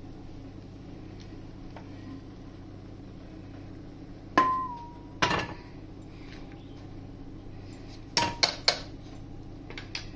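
Kitchen utensils knocking under a low steady hum. About four seconds in, a steel saucepan is set down with a short metallic ring. A second knock follows a second later, then three quick sharp clicks near the end as the tea strainer is handled at the mug.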